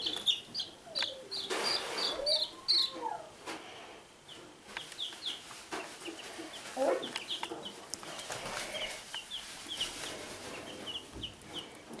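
Baby chicks peeping: many short, high cheeps in quick runs, busiest in the first three seconds and continuing more sparsely after.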